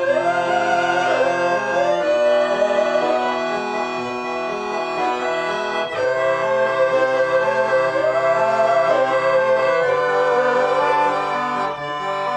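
Piano accordion and violin playing a slow, dark piece together. The accordion holds chords that change about every two seconds, while the violin carries a sustained melody that slides between notes.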